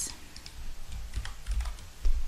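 Computer keyboard being typed on: several separate, light keystrokes at an uneven pace.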